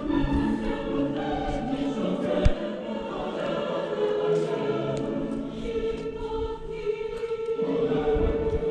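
Choral music: a choir singing long, held notes in harmony, with a single sharp click about two and a half seconds in.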